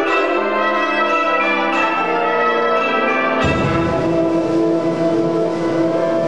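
Concert wind band playing, with ringing, bell-like struck notes repeating about every two-thirds of a second in the first half. About three and a half seconds in, the full band enters with low notes and a held chord.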